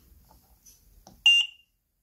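Philips Respironics Trilogy ventilator giving a single short, high electronic beep a little over a second in, as a front-panel button is pressed and the 'Power Off?' prompt comes up.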